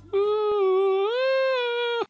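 A man humming in falsetto, in imitation of an eerie outer-space sound: one held note that glides up to a higher held note about halfway through, then stops abruptly.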